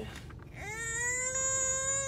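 A sick infant crying in one long, steady wail that starts about half a second in.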